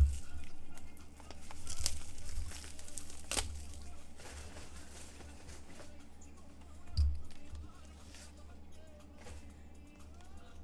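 Cardboard trading-card box being handled and opened: scuffing and rustling of cardboard, a sharp tap about three and a half seconds in and a dull thump about seven seconds in.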